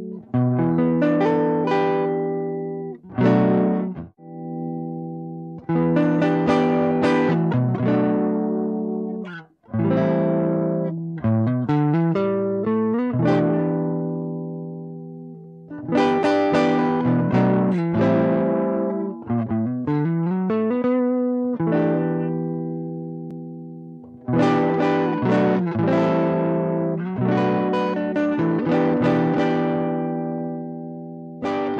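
Danelectro U1 electric guitar played through a DOD Overdrive Preamp 250 blended in by an MBS Parallel Universe effects-loop pedal, into a Fender Blues Jr amp. Chords are strummed and left to ring and die away, with quicker moving notes around the middle.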